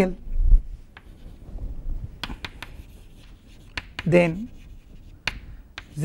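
Chalk tapping and scratching on a chalkboard as words are written, a scattered series of short, sharp clicks a fraction of a second apart to a second or more apart.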